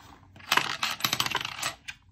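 Black metal planner discs clinking and clicking as they are worked into the punched edge of a disc-bound planner cover: a rapid run of small metallic clicks starting about half a second in and lasting a little over a second.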